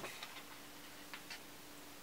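A few faint clicks of small metal eyeshadow pans being handled, a sharper one right at the start, over a faint steady hum.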